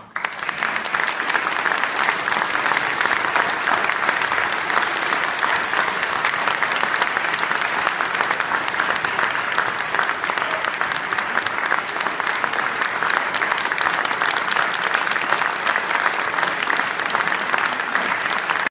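Audience applause in a concert hall, with the conductor and orchestra players clapping too. It breaks out all at once as the music ends and keeps up as thick, steady clapping.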